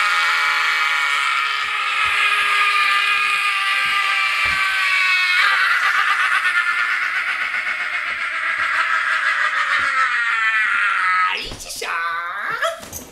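A shrill screeching voice held as one long, loud note, made on purpose as an annoying noise. The pitch wavers from about halfway through, and the note breaks off near the end.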